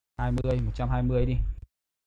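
Only speech: a man talking for about a second and a half, then cutting off suddenly.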